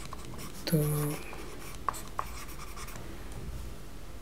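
Stylus writing on a tablet: faint scratching with two small sharp clicks around two seconds in, over a steady low hum.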